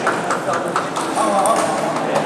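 Table tennis balls clicking off tables and paddles in quick, irregular knocks, from several tables at once, over a hubbub of voices.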